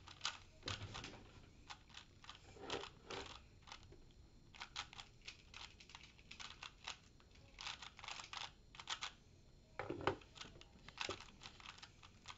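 Rubik's brand 3x3 cube being turned by hand, its plastic layers clicking and clacking in quick irregular runs, with a louder knock about ten seconds in. The cube is freshly over-lubricated with Stardust cube lube and feels gummy.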